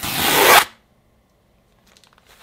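A mailing envelope torn open along its tear strip in one quick rip lasting about half a second.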